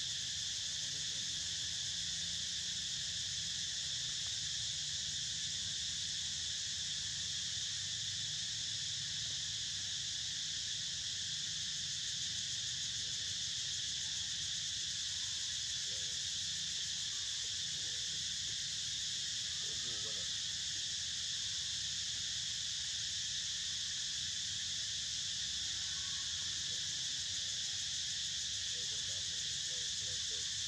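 A steady insect chorus of crickets or cicadas, a constant high-pitched buzz that holds unchanged throughout.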